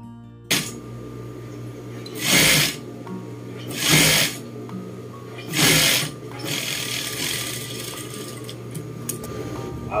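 Juki industrial sewing machine stitching in three short runs of about half a second each, with a steady low hum between them.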